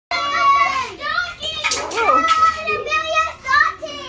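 Young children's high-pitched voices calling out and shrieking over one another in a small room.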